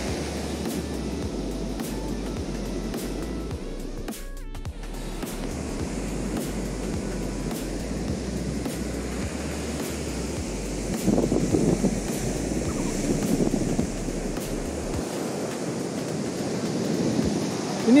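Ocean surf breaking steadily on a sand beach, a continuous wash of noise, with wind rumbling on the microphone until near the end. The sound briefly cuts out about four seconds in.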